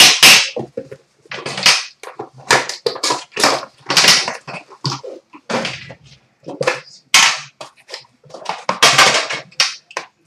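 Plastic shrink wrap crackling and tearing as it is stripped off a sealed trading-card box and crumpled, in short irregular bursts about every half second, along with the box being handled.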